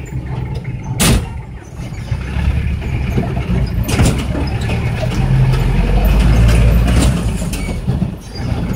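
Trotro minibus engine and road noise heard from inside the passenger cabin: a steady low rumble that grows louder from about two seconds in. There are sharp knocks about one second and four seconds in.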